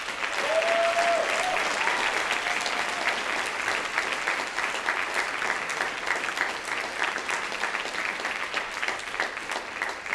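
Audience applause breaking out suddenly at the end of a piece and carrying on steadily.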